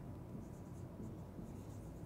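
Marker pen writing a word on a whiteboard: faint scratchy strokes of the felt tip on the board, most of them in the first second.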